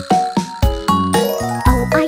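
Children's song music: an instrumental passage of short pitched notes over a steady beat, with a quick rising run of high notes about halfway through.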